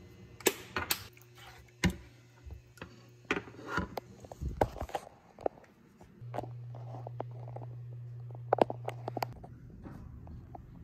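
A spoon knocking and scraping against a nonstick frying pan while stirring thick tomato sauce, a series of sharp clicks and taps. Past the middle a steady low hum sets in for about three seconds, with a few quick clicks near its end, then stops suddenly.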